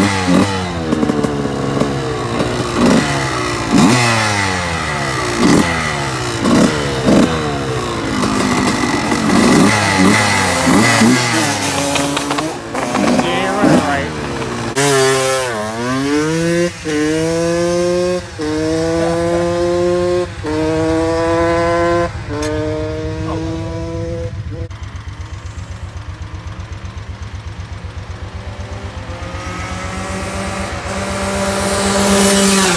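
Honda CR125 dirt bike's two-stroke engine revving in short blips, then pulling away hard through the gears: about five rising whines, each cut off by a shift, fading into the distance. A low engine idle stays close by near the end.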